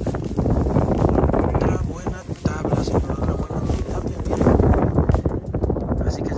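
Wind buffeting the microphone in a steady low rumble, over the rustle of a cast net being dragged across dry grass.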